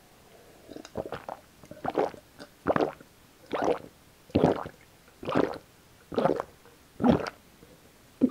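A person gulping tomato juice from a glass mug, picked up close: about eight loud swallows in an even rhythm, a little under one a second.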